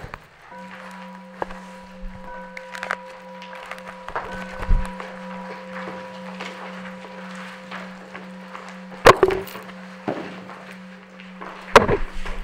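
A steady low drone tone with two fainter higher overtones, starting about half a second in and held evenly, with a few scattered clicks and knocks over it, the loudest about nine seconds in.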